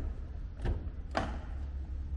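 Front door of a 2016 Audi A3 being unlatched and opened: two short clicks from the handle and latch, about a second in, over faint low room rumble.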